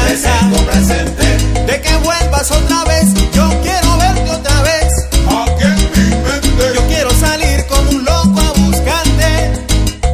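Salsa romántica recording playing: a steady dance rhythm with a pulsing bass line, percussion and melodic instrumental lines.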